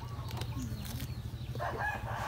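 A rooster crows in the background, starting about one and a half seconds in, over a steady low hum.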